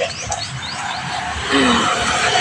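Small birds chirping in short, quick notes, then about one and a half seconds in a louder spread of background noise with voices comes in.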